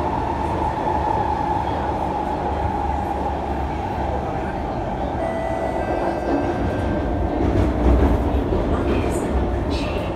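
C151 MRT train heard from inside the carriage while running: a steady rumble of wheels and motors with a whine that drops slightly in pitch over the first few seconds. A few sharp clicks come near the end.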